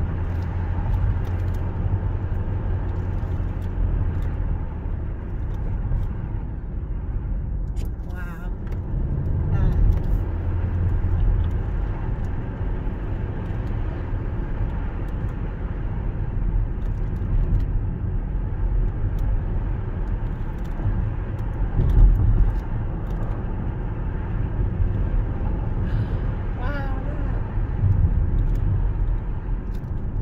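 Car driving on a narrow country road, heard from inside the cabin: a steady low rumble of engine and tyre noise, with a brief louder bump about two-thirds of the way through.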